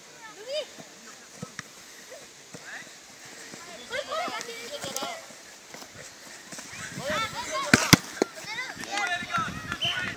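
Young footballers shouting and calling out to each other on the pitch in high children's voices, with no clear words. One sharp thump, the loudest sound, comes about three-quarters of the way through.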